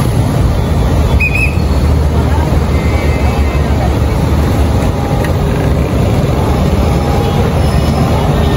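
Loud, steady outdoor traffic noise with a low engine hum underneath.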